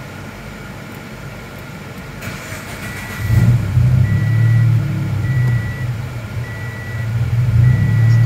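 Car engine cranking briefly and catching about three seconds in, then idling with an uneven, wavering note: a slight stumble on start-up, the mixture going a little lean for a moment on an engine in the middle of being tuned. A high warning chime beeps five times, about once a second, from the start-up on.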